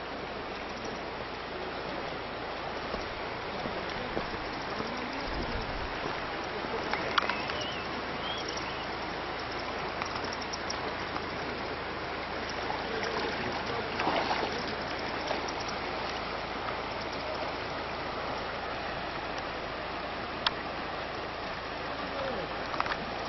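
Shallow, stony river running steadily over rocks and riffles, with a few brief sharp clicks.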